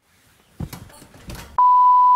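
A few short crackles and thumps. Then, about one and a half seconds in, a loud steady beep starts: the test tone that goes with colour bars on a TV broadcast that has been interrupted.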